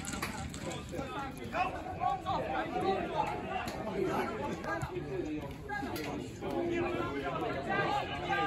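Indistinct chatter of several voices talking at once, with no clear words, the steady talk of spectators at the touchline.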